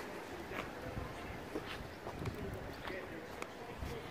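Quiet city-street background with faint distant voices and a few light knocks or steps.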